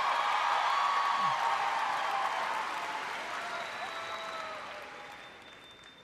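Audience applauding in response to a joke, with a few faint voices in the crowd; the applause dies away steadily toward the end.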